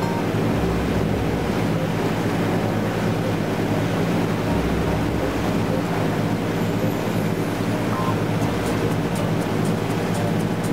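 Steady drone of a motor cruiser's engine heard on board while under way, with a constant rush of wind and water and a few low wind buffets on the microphone.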